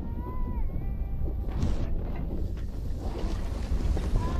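Wind buffeting the microphone over the low rumble of an SUV rolling slowly across a grassy field. A faint, wavering whistle-like tone rides on top for about the first second and a half.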